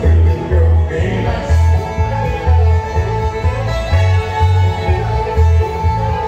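Bluegrass band playing an instrumental break, with no singing: deep bass notes loud on the beat, under guitar, banjo and fiddle.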